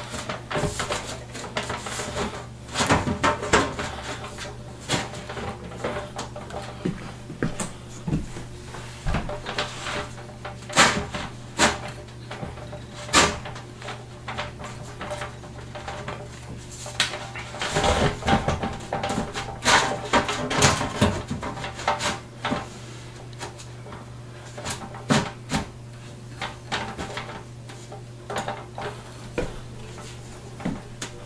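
Telescope mirror cell being fitted by hand onto the end of the tube: irregular clicks, taps and knocks as it is shifted and turned to line up the screw holes, busiest twice. The fit is tight and the holes are hard to line up.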